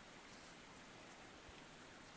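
Near silence: a faint, steady hiss of quiet outdoor ambience.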